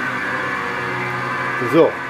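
Electric motor of a workshop machine running steadily at an even pitch, starting abruptly; a man's voice comes in over it near the end.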